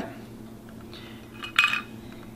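A single short clink of tableware, ringing briefly, about one and a half seconds in, against quiet kitchen room tone.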